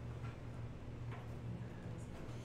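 Room tone: a steady low hum with two faint ticks about a second apart.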